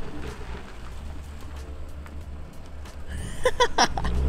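BMW M4's twin-turbo straight-six running at low revs some way off, a steady low rumble as the car rolls slowly. Brief laughter near the end.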